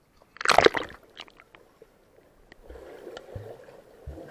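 A person jumping into a swimming pool: one loud splash about half a second in, then a few drips and small splashes. From about two-thirds of the way through, the water sounds muffled as the camera goes under the surface.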